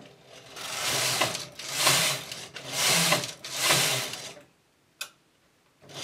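Knitting machine carriage pushed back and forth across the needle bed four times, knitting four rows in the main colour: a swish that swells and fades with each pass. A single sharp click follows about five seconds in.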